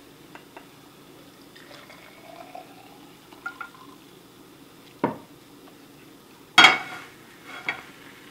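Hot water poured from a saucepan into a glass jar, a faint trickle whose pitch rises as the jar fills. Then comes a sharp knock about five seconds in, a louder clatter of pan and glass about a second and a half later, and a lighter knock near the end.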